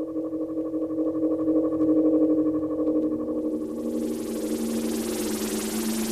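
Electronic spaceship sound effect for a hovering craft: a steady hum of several held tones, with a lower tone joining about three seconds in and a hiss rising in about halfway through.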